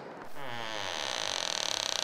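A drawn-out creak: a rapid run of fine clicks that starts about a third of a second in and keeps on steadily.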